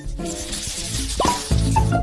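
Background music with a brief rising sliding tone a little over a second in; its low notes come in stronger for the last half second.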